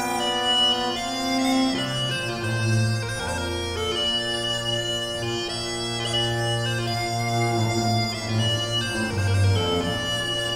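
Recorded baroque chamber music: a musette, the small bellows-blown French court bagpipe, plays a melody over its steady drone, with a low bass line moving beneath it.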